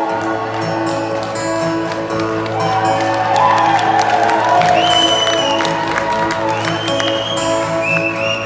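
Live rock band starting a song through the hall's PA: a steady bass note comes in at the start under sustained keyboard and guitar chords, with a few higher held notes sliding into pitch later on. The audience cheers and applauds over the intro.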